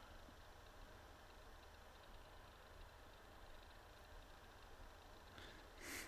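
Near silence: faint room hiss between spoken remarks, with a soft brief sound just before the end.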